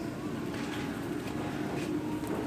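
Steady background noise of a supermarket aisle, with a faint low hum held throughout and a few light ticks.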